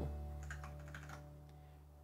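A few faint computer keyboard clicks over a low sustained musical note that fades away.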